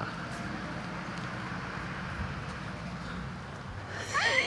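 Steady low rumble of road traffic.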